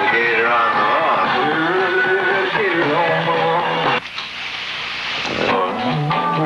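Indistinct voices talking for about four seconds, then a hiss for about a second and a half. Near the end a rock band's music starts up.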